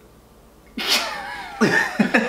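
A man bursting out laughing about three-quarters of a second in: a sudden, breathy, high-pitched laugh that slides down in pitch, then a second short laugh near the end.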